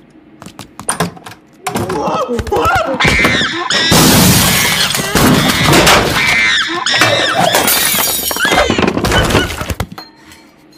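Cartoon soundtrack of an office being wrecked: repeated crashing and breaking, with shrill screeching over it. It starts about a second and a half in and carries on until just before the end.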